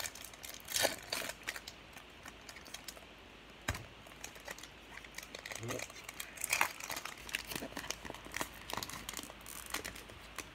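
A shiny foil baseball-card pack wrapper being torn open and crinkled by hand: irregular crackles and rustles, with a sharp snap about four seconds in and a busier run of crinkling in the second half as the wrapper is worked off the cards.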